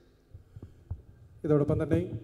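A brief pause with a few soft, low thumps, then a man's voice starts speaking again about one and a half seconds in.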